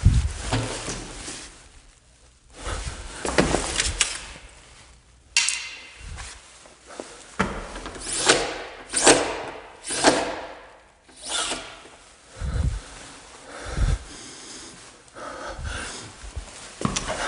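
Close, irregular rustling, scraping and knocking of someone moving about and handling things, with a sharp knock about five seconds in and a run of scrapes a few seconds later.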